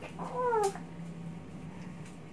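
A toddler's short, high-pitched wordless vocal, a sing-song 'aah' that arches up and falls away, lasting about half a second.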